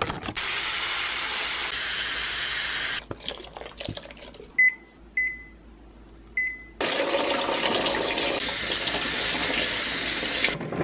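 Tap water running onto berries in a plastic salad-spinner basket. About three seconds in the water stops and a microwave keypad gives three short beeps. The tap runs again from about seven seconds in.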